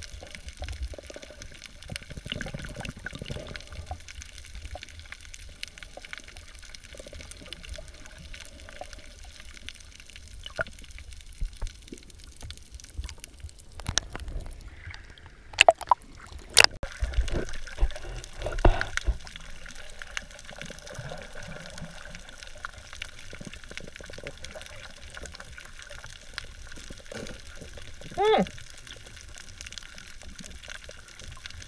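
Water sloshing and bubbling around an underwater camera, heard muffled through its housing, with a run of loud splashes and knocks in the middle as the camera breaks the surface. A brief pitched call sounds near the end.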